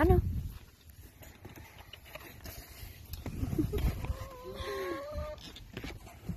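A hen gives one long drawn-out call about four seconds in, after a low rumble.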